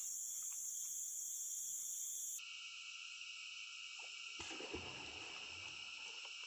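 Steady high-pitched chorus of calling forest insects, which cuts abruptly a little over two seconds in to a lower-pitched steady drone.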